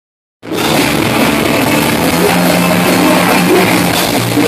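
Punk rock band playing live and loud: bass guitar, guitar and drum kit. The music cuts in suddenly about half a second in.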